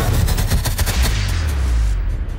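Cinematic trailer music ending in a rapid run of sharp percussive hits, about ten a second, over a deep low rumble; the hits stop about a second in while the rumble carries on.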